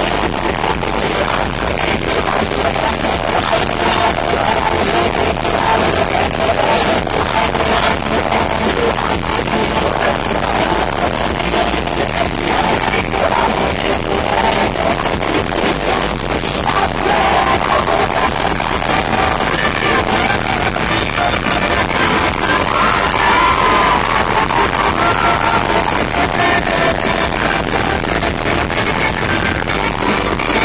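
Rock band playing live in an arena, heard from the audience: electric guitar and lead vocals over a dense, loud mix that runs on without a break.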